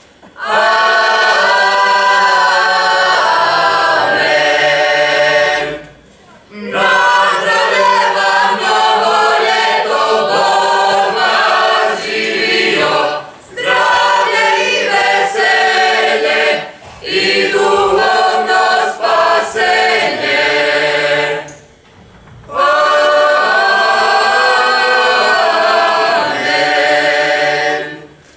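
Traditional Croatian folk song sung a cappella by a group of voices, in five phrases broken by short breaths about 6, 13, 17 and 22 seconds in.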